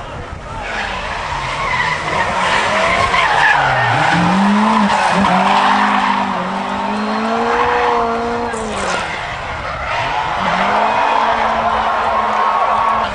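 A drift car's engine revving up and down while its tyres squeal and scrub through a slide, with the revs peaking about two-thirds of the way through and then falling away.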